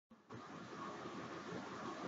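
Dead silence for a moment at the start, then faint, steady background room noise.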